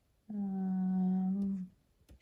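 A woman humming a drawn-out, level 'mmm' on one steady note for about a second and a half, a thinking hum.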